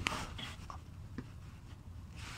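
A sharp click, then light scratching and rustling with a few small ticks: handling noise from someone moving around under a car while filming.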